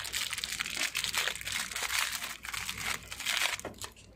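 Thin clear plastic packaging bag crinkling and rustling as a small phone-holder clip is worked out of it by hand; the crackling stops just before the end.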